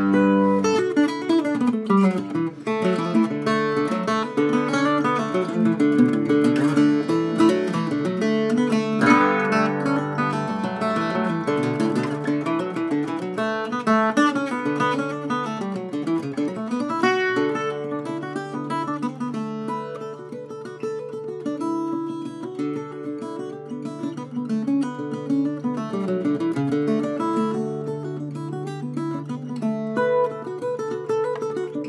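All-walnut Northfield flat-top octave mandolin played solo: a quick tune picked in single notes over steady, ringing low notes.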